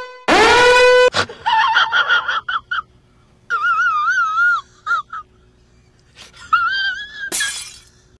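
Comic sound effects edited in over a film clip: a pitched tone that drops and then holds, then high warbling voice-like sounds whose pitch wavers up and down, and a short burst of noise near the end.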